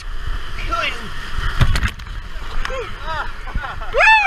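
Whitewater rushing around an inflatable raft running a rapid, with spray hitting the camera microphone in a burst about one and a half seconds in. Rafters let out several short rising-and-falling yells over the water noise.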